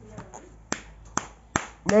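Four sharp slaps in quick succession, a small child's open hand striking a man's back and shoulders in play.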